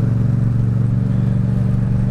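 Yamaha MT-07's 689 cc parallel-twin engine running at steady revs through an Akrapovič exhaust while the bike cruises in traffic.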